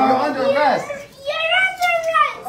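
A young boy's high-pitched voice speaking in two short phrases, with a brief pause about a second in.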